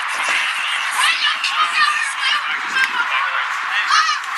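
Distant shouted voices calling out across an open field, short and broken, over a steady background hiss.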